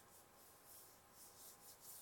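Near silence, with faint rubbing of palms pressed together.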